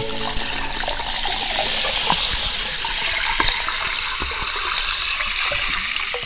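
Liquid poured into a glass over ice and a lime slice: a steady splashing hiss with small crackles running through it.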